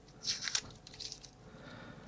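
Yellow tape being peeled off a small aluminium enclosure and crinkled between the fingers: a few short, faint rustles and crackles, mostly in the first second.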